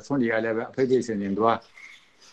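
A man speaking, pausing near the end.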